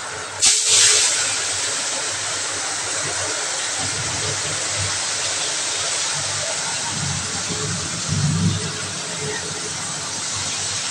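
Prawns marinated in turmeric and salt going into hot oil in a pan: a loud burst of sizzling about half a second in, settling into steady sizzling.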